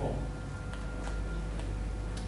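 Room tone: a steady low hum with a few faint, irregular ticks.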